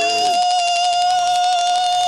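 Beaker's long, high-pitched squeal, held on one slightly wavering note.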